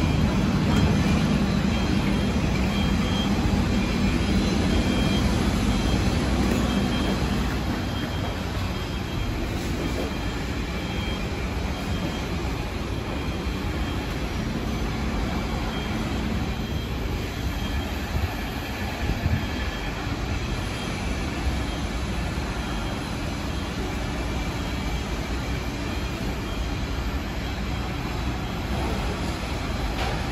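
Steady hum of a C751B MRT train standing at a platform with its doors open, its air-conditioning and onboard equipment running, along with the open station's ambience. It is a little louder with a low hum for the first several seconds, then settles.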